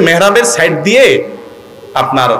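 A man preaching in Bengali into a public-address microphone, his voice raised and animated; he breaks off for a short pause about a second and a half in.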